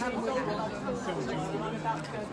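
Indistinct background chatter of several people talking at once, with no one voice standing out.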